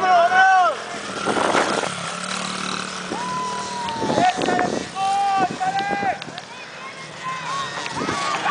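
Small dirt bike's engine revving up and down as it rides a motocross track, mixed with spectators shouting.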